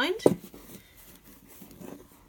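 A single sharp knock just after the start as the hardback journal is handled against the wooden tabletop, followed by quiet handling of the book and cord.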